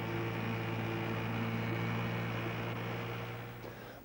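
Boat engine running steadily at a constant pitch over a wash of water noise, fading out near the end.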